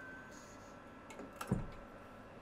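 X-ray cabinet door being shut: a light click, then one thud about one and a half seconds in as the door closes.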